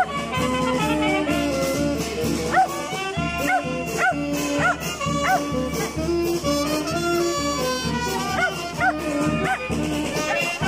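Uniformed wind band with clarinets and saxophones playing a piece. A dog barks repeatedly over the music in two runs of short barks, one in the middle and one near the end.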